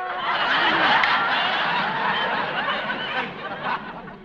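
Studio audience laughing, a dense wash of many voices that thins out just before the end.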